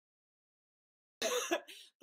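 Dead silence for just over a second, then a person's short cough with a fainter tail.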